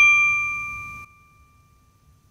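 A single bell-like ding, the sound effect of a channel logo sting, ringing with a clear high tone that fades and then cuts off about a second in, leaving a faint fading tail.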